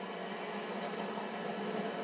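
Steady background hiss with a faint, even hum, no voices.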